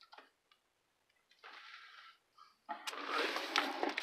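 Bagged comic books being handled and swapped: faint clicks at first, then soft plastic-sleeve rustling that grows louder in the last second or so, with a sharp click near the end.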